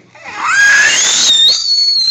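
Baby's loud, high-pitched squeal that starts about half a second in and rises steeply in pitch before holding at a shrill peak.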